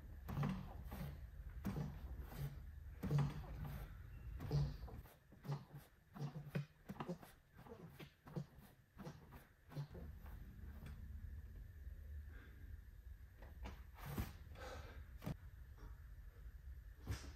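Rhythmic effortful exhales, about one every second and a half, from a gymnast working through core repetitions on a padded vaulting buck. A low steady hum runs underneath, and a couple of sharp clicks come near the end.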